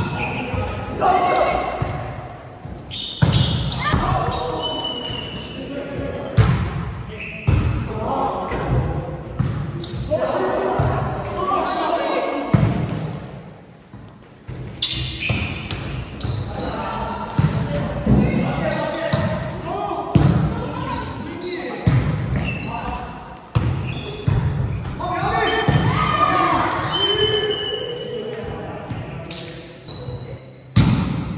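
A volleyball being struck again and again in an echoing gym hall during rallies: sharp slaps and thuds of ball on hands and floor, with players shouting and calling between hits.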